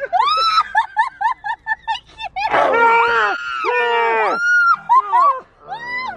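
People screaming and laughing in fright: high-pitched rising-and-falling cries, a quick run of laughing notes about a second in, and a long held scream past the middle.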